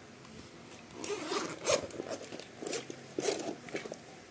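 A fishing rod bag's long zipper being pulled open in several quick scratchy strokes, along with the rustle of the bag's fabric being handled.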